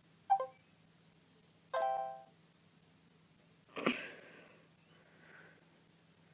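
Electronic chimes from voice-assistant apps on phones, marking the end of listening as the spoken query is processed: a short blip just after the start and a longer ringing chime about two seconds in. A louder, short sound follows about four seconds in.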